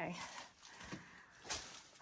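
Faint scuffing and two soft knocks about half a second apart, the sound of people moving over the rocks of a narrow cave passage.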